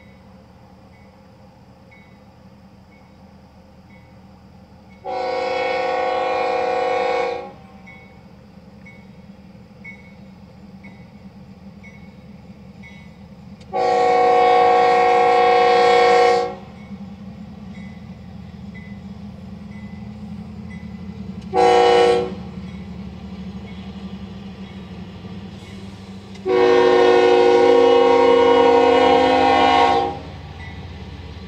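Diesel locomotive air horn sounding the grade-crossing signal: two long blasts, a short one, then a final long blast. Underneath, freight cars roll steadily through the crossing with a low rumble.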